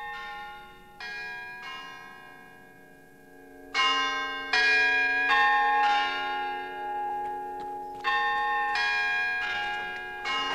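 Church bells ringing: strikes at uneven intervals, each tone ringing on and overlapping the next, with the loudest peals about four seconds in and again near the end.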